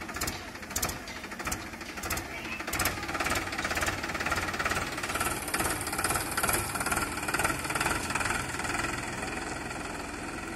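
Powertrac 439 DS tractor's diesel engine running with a regular clatter as the tractor drives past, growing louder as it comes close near the middle, then easing slightly as it moves away.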